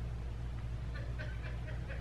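Low steady electrical hum and faint hiss of a microphone recording setup, with a few faint clicks a little after a second in.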